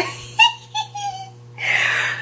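A woman's short, high-pitched squeals and giggles of excitement, followed near the end by a breathy exhale.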